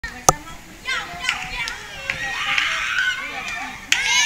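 Children playing, with high voices shouting, shrieking and chattering over one another. A sharp click stands out about a quarter of a second in, and a second one comes near the end.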